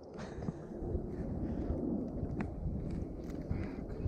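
Steady low rumble of wind and water around a small fishing boat, with a few faint knocks and one sharper click about two and a half seconds in.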